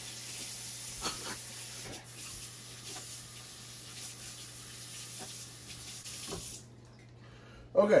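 Kitchen faucet running steadily into a sink as bell peppers are rinsed under the stream, with a few light knocks of handling. The water shuts off near the end.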